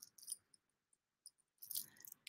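Faint clinking of a beaded chain bracelet's metal links, charms and beads as it is handled: a single small clink early and a short cluster of clinks near the end.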